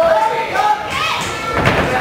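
Shouting voices from around the ring during a kickboxing bout, with a single dull thud about one and a half seconds in as the fighters exchange.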